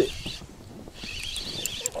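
Spinning reel (Shimano Stadic 4000) whirring in two short spells while a hooked zander pulls hard on the bent rod, with a few sharp ticks.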